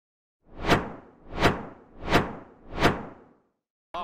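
Four whoosh sound effects of an intro graphic, each swelling up and fading away, evenly spaced about two-thirds of a second apart.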